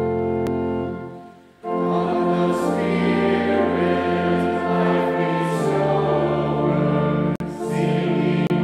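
A church organ holds a chord that fades out about a second in. Then a church choir begins singing the introit.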